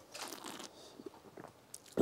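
Faint mouth sounds of a person sipping red wine from a glass and working it in the mouth: a soft draw lasting about half a second, then a few small wet clicks.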